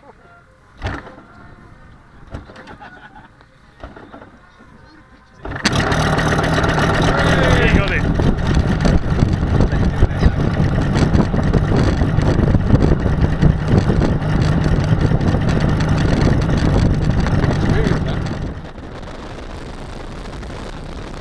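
Engine of a large-scale radio-controlled model warbird being hand-started at the propeller. A few short knocks, then the engine catches about five and a half seconds in and runs loudly and steadily. Near the end it drops to a quieter steady sound.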